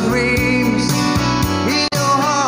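Slow rock ballad: a voice singing over guitar and band accompaniment, with a brief drop-out in the sound just before the end.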